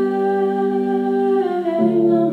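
Live music: a woman's voice holds one long sung note that steps down in pitch near the end, over guitar and piano accompaniment.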